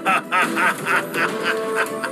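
A cartoon villain's gloating laugh, a rapid run of 'ha' pulses about five a second, over background music.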